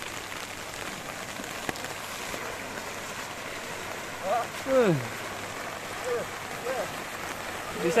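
Floodwater rushing across a street in a steady wash of noise. Short shouted calls from people sound over it about four to five seconds in and again around six to seven seconds.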